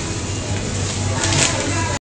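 Indoor shopping-centre background noise: a steady low hum under an even hiss, with two faint short hisses about a second and a quarter in.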